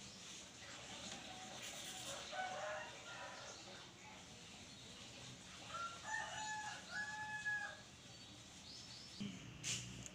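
A bird calling faintly: a long call made of several held notes about six seconds in, after shorter, weaker calls two to three seconds in.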